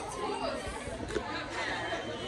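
Chatter of several people talking at once in a room.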